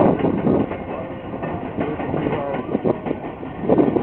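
Passenger railroad cars rolling past, their steel wheels clacking over the rail joints in an irregular run of knocks over a steady rumble.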